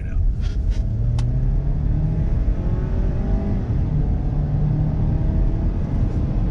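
2019 Ford Edge Titanium's 2.0-litre turbocharged four-cylinder accelerating in comfort mode, heard inside the quiet cabin. The engine note rises, drops at an upshift a little past halfway, then rises again. A brief click comes about a second in.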